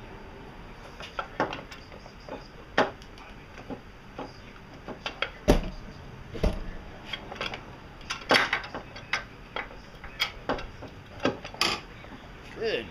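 Irregular metal clinks and knocks as a stuck bolt is worked loose from a car's power steering pump mounting bracket, with two heavier knocks about five and a half and six and a half seconds in.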